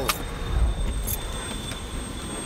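Rumbling handling noise on a handheld camera's microphone as a person climbs out of a car, with a brief hiss about a second in.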